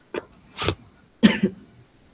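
A person coughing: three short coughs, the last and loudest about a second and a quarter in.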